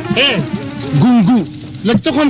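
A man's voice vocalizing without clear words, its pitch swinging up and down in short arches. It is loudest about a second in, then drops away briefly near the end.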